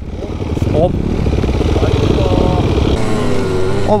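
Small two-stroke motocross bike engines, a KTM 65 among them, running at a low idle with a dense rapid beat. About three seconds in, the sound changes to one engine running higher, its pitch rising and falling as it rides off.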